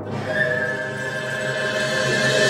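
Chamber ensemble of sogeum flute, haegeum fiddle, yanggeum dulcimer, ajaeng, accordion, marimba and percussion playing a loud, dense sustained passage with long held high notes, growing slightly brighter and louder toward the end.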